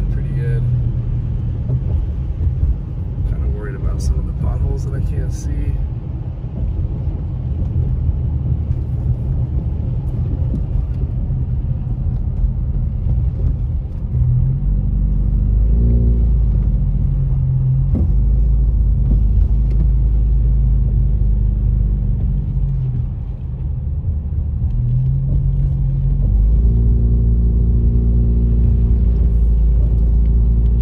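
Car interior sound while driving on a wet road: a steady low engine and road rumble. The engine note bends up and down a few times around the middle and rises near the end as the car changes speed.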